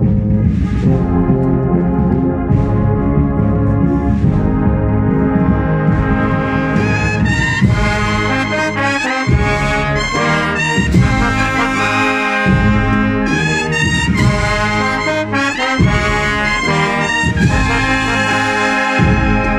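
Agrupación musical, a Spanish processional brass band, playing a march: trumpets and trombones in sustained chords, growing louder and brighter about seven seconds in, with short breaks between phrases.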